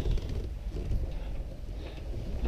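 Low, steady rumble of wind buffeting the camera's microphone.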